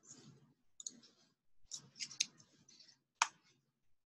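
A few faint, scattered clicks of computer keys and mouse buttons, the sharpest about three seconds in.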